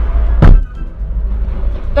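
Low rumble of a car heard from inside the cabin, with one loud, sharp thump about half a second in.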